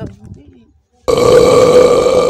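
Brief voice, then about a second in a very loud, harsh buzz that holds one steady pitch for over a second and cuts off sharply.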